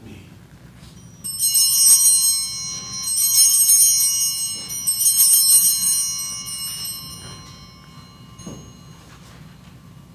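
Sanctus bells, a cluster of small high-pitched altar bells, rung in three peals at the elevation of the chalice, then ringing away to nothing.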